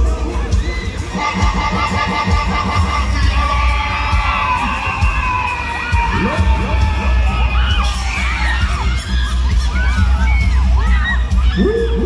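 Riders on a fairground thrill ride screaming and shrieking together: one long held cry early on, then many overlapping short screams in the second half, over loud ride music with a heavy bass.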